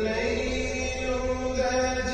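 Background vocal chanting: a voice holding long sung notes, changing pitch a couple of times.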